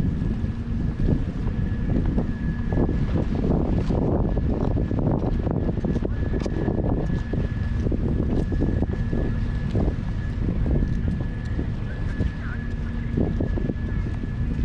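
Wind buffeting a GoPro's microphone in a steady low rumble, with a faint steady high hum running through it and scattered irregular taps.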